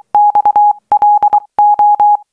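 Morse code telegraph beeps of an incoming telegram: one steady mid-pitched tone keyed on and off in short and long beeps, spelling out a message.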